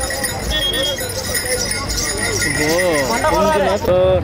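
Bells on a decorated bull's collar jingling and its hooves clopping on the road as it is led along, with people's voices, one of them loud and close in the second half.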